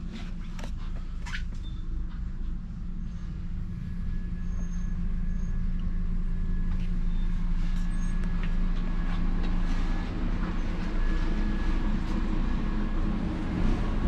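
Steady low mechanical hum of a coach with a droning tone held through it, getting louder about four seconds in.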